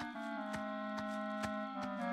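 Cartoon background score: a held, sustained chord with a light ticking beat, about three ticks a second.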